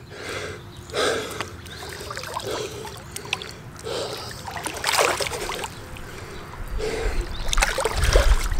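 Pool water splashing and lapping close to the microphone as a swimmer treads water with an egg-beater kick, with breathy gasps between the splashes. There is a sharp splash about five seconds in, and a low rumble builds near the end.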